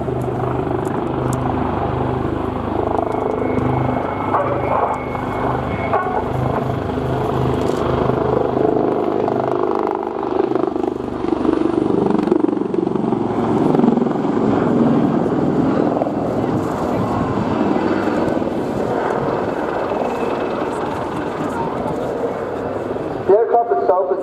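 Westland Wildcat (AW159) helicopters in display flight: steady rotor and turboshaft engine noise. A pulsing rotor beat is strong for the first several seconds and then blends into a steadier sound.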